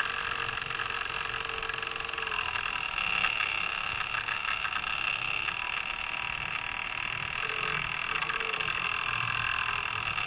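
A small electric motor wired into a miniature model engine running steadily, a constant high-pitched whine with a buzzing rattle, and a second, higher whine joining about halfway through.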